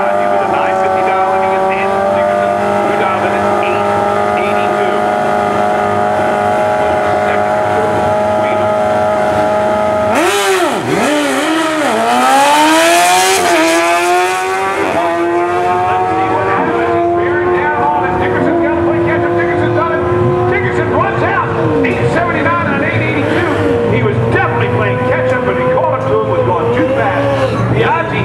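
Two Suzuki 1000 drag-racing motorcycles held at steady revs on the start line, then launching about ten seconds in. Their engines rise in pitch in repeated sweeps through the upshifts as they pull away down the strip, and the sound then grows weaker and wavers.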